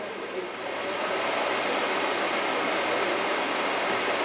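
Super 8 film projector running: a steady whirring hiss that swells about a second in and then holds level.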